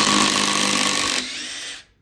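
Two Makita cordless impact drivers, a 40V XGT and an 18V, running together in reverse and backing long screws out of a wood round. The combined sound drops a little over a second in as one driver finishes first. The other runs on alone until shortly before the end.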